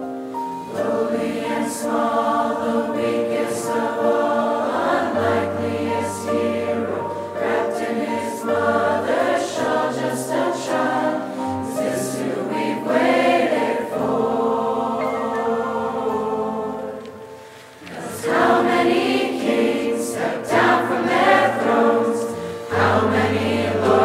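Mixed teenage choir singing in parts, many voices on held notes. The singing thins out briefly about three-quarters of the way through, then comes back fuller and louder.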